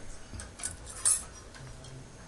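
Faint clinks of cutlery and dishes at a meal table: a few light clicks, the clearest about a second in.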